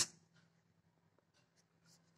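Faint scratching of a pen writing on paper, a few short strokes, over a faint steady hum.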